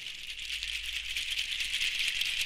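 A percussion rattle shaken continuously, a dry, high rattling that grows gradually louder.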